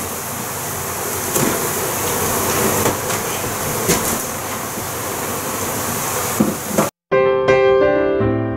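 Steady rushing noise with scattered knocks and scrapes as a heavy comb-covered board is worked loose and lifted from under a cabinet. About seven seconds in the sound cuts off abruptly and solo piano music begins.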